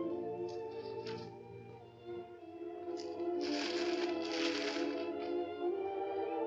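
Orchestral film score with held notes. A little past the middle, a loud rustle of wrapping paper comes in two swells over about a second and a half as the gift is unwrapped.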